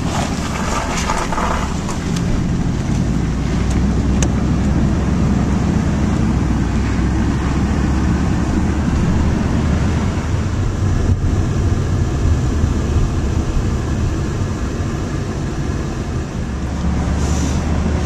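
Steady engine drone and road noise heard from inside a moving car's cabin, a low hum under an even hiss of tyres and wind.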